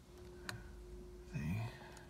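A single sharp click of the trip computer button being pressed, about half a second in, over a faint steady hum.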